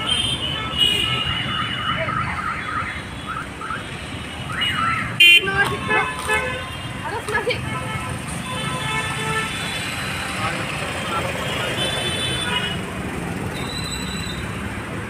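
Car-park ambience with people's voices and road traffic, and a short car horn toot about five seconds in, the loudest sound.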